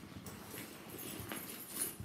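A bunch of keys clicking and jingling lightly, with rustling as they are pushed into the bag's side pocket.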